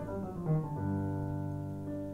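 Music: piano chords ringing and fading, with a new chord struck about half a second in, in an instrumental gap of a slow song.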